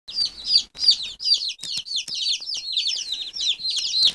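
A brooder of baby chicks peeping continuously: many short, high, falling peeps overlapping, several a second.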